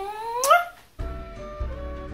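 A woman's short vocal sound that glides up in pitch, then background beat music starts about a second in.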